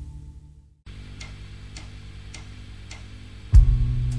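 A low sustained drone fades out to a moment of silence, then soft, even ticks about every 0.6 s count in a new song, a drum-machine or click pattern. Near the end the band comes in loudly with bass and guitar.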